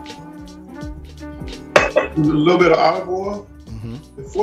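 Background music with a regular beat, then about two seconds in a loud voice breaks in over it.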